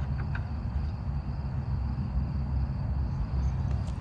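Outdoor night ambience: a steady low rumble with a faint, steady high chirring of crickets, and a couple of faint ticks about a quarter second in.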